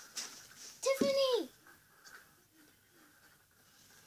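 A child's wordless vocal sound: a single short hummed note about a second in that falls away at the end, then faint room quiet.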